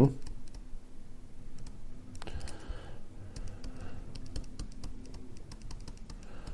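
Light, irregular clicks and taps of a stylus on a tablet screen during handwriting.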